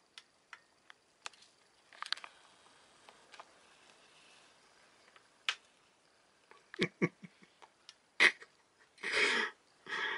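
Faint, irregular snaps and crackles from the smoking flyback transformer of a powered-up CRT television: high-voltage breakdown inside the failing transformer. Two short hisses come near the end.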